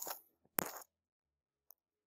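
Computer mouse clicking: a sharp click at the start, a louder one about half a second in, and a faint tick near the end.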